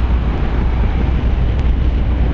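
Steady wind rush over the microphone with a low rumble from a Honda ADV 160 scooter riding at speed.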